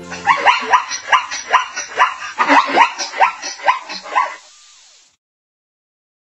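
Zebra calling: a rapid series of short, yelping barks, about four a second, that stops about four and a half seconds in.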